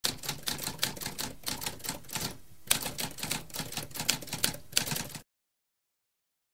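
Typewriter typing: a rapid, uneven run of key strikes with a short pause about halfway through, stopping abruptly a little under a second before the end.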